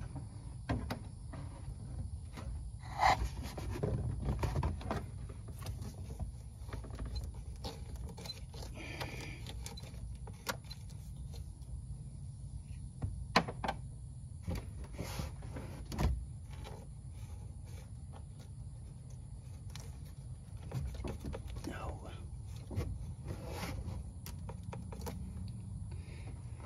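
Hands working a PCV hose fitting loose from under a truck's intake: scattered clicks, knocks and rattles of plastic parts and wiring, the sharpest about 3, 13 and 16 seconds in, over a low steady hum.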